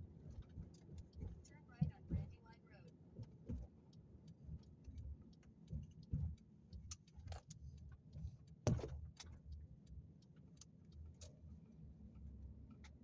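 Car driving, heard from inside the cabin: a low steady rumble of engine and road, with scattered small clicks and rattles and a sharp knock about two seconds in and again about nine seconds in.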